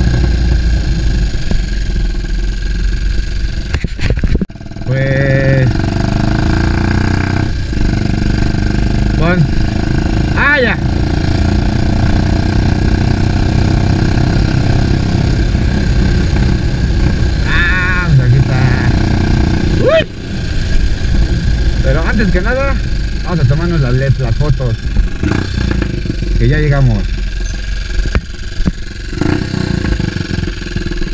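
Motorcycle engine running as the bike rides along at low speed, with a steady low rumble of engine and wind. The sound drops away briefly about four seconds in and again around twenty seconds. Short pitched sounds that bend up and down, like a voice, come in over it several times.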